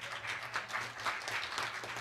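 Congregation applauding: many hands clapping at once, a dense, even patter throughout.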